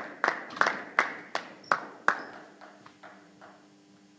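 Table tennis ball bouncing repeatedly on a hard surface: about seven sharp clicks roughly three a second, then a few fainter ones dying away after about two and a half seconds, echoing in a large hall.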